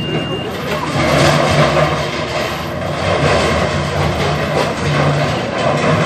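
Toyota FJ Cruiser's engine running as it crawls over a bed of loose steel pipes, the pipes clattering and rattling against each other under its tyres.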